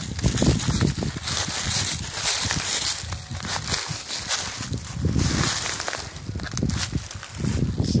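Footsteps crunching through dry fallen leaves and creek-bed gravel, uneven and crackly, over a low, uneven rumble on the microphone.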